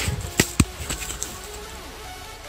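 A few sharp clicks and knocks in the first second, from gloved hands handling and scraping a dug-up round disc.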